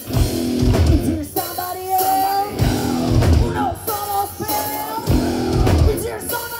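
Live rock band playing a song: electric guitars, bass guitar and drum kit, with a female voice singing over them.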